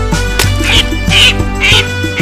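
Cartoon duckling quacks, three short ones about half a second apart, over an upbeat children's song instrumental.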